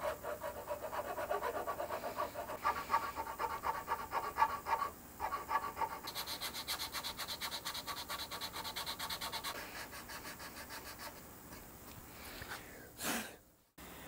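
Rapid, even back-and-forth strokes of a hand file rasping across the edge of a wooden guitar headstock as it is shaped, changing about halfway through to the brighter hiss of a sanding block on the wood. The strokes die away near the end.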